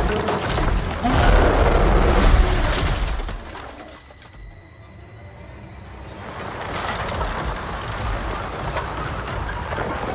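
Film trailer sound mix: loud crashing and booming over music for about three seconds, then a sudden drop to a quiet stretch with a thin high ringing tone, after which music and a low rumble build back up.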